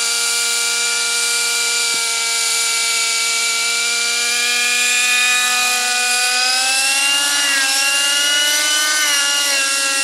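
Align T-Rex 600 nitro RC helicopter's two-stroke glow engine and rotor head running steadily while on the ground. From about six seconds in, the pitch rises and wavers as it spools up and lifts off.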